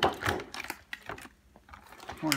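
Plastic shipping corner protectors being pried off the metal field of an electric football game: a sharp plastic snap, then a few light clicks and rattles.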